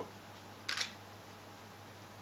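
A single short camera shutter click about three-quarters of a second in, over a low steady room hum.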